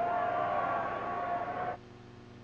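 A single long held note with fainter overtones, steady in pitch, that cuts off shortly before the end, leaving only a faint low hum.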